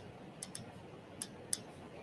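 A few faint, sharp clicks at irregular spacing, about five in two seconds, from a hot glue gun being worked while rhinestone trim is pressed and glued down.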